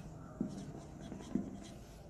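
Marker pen writing on a whiteboard: faint rubbing and scratching of the felt tip, with two short, slightly louder strokes.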